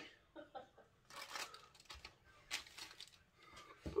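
Faint handling noises: several short rustles and scrapes, as a metal chain necklace is handled and put on over a cotton shirt.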